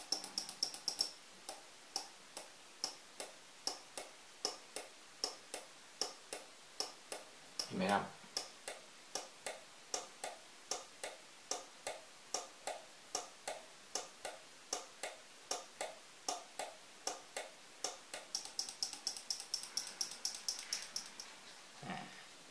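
A 12-volt relay in a home-built lamp flasher circuit clicking as it switches a small halogen bulb on and off. It clicks at a steady, slow rate of about two to three a second, slowed by a 1000 µF timing capacitor, and the clicks come faster near the end.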